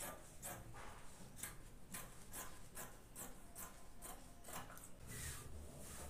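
Scissors cutting through fabric, a steady series of snips about two a second.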